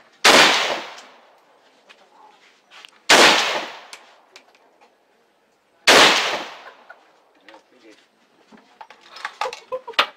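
AK-47 assault rifle firing three single shots, roughly three seconds apart, each a sharp crack followed by about a second of ringing echo.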